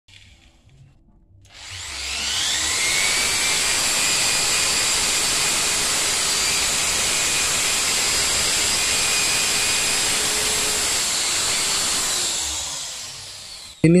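Corded electric drill running with its bit in a hole in a concrete wall: it spins up about a second and a half in, runs steadily for about ten seconds, then winds down near the end.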